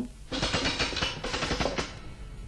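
A rapid rattling radio-play sound effect, like a short drum roll. It starts about a third of a second in and stops just before the end, marking the magic horse's peg being turned.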